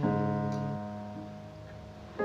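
A G major chord struck on a piano keyboard, ending the sung line, left to ring and fade away. A soft extra note comes in just over a second in.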